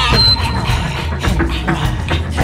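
Live band playing an industrial rock song: a driving drum beat over a steady bass, with the vocals paused.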